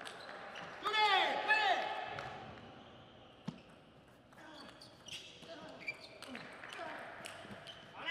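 Table tennis rally: the celluloid ball clicking off rackets and table at irregular intervals, with squeaks of players' shoes on the court floor, loudest about a second in.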